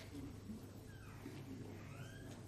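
Faint room noise of a large chamber with a steady low hum, and a couple of faint short squeaks about a second in.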